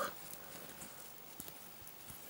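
Faint handling sounds: fingers turning a sequined felt ornament, with a couple of light taps.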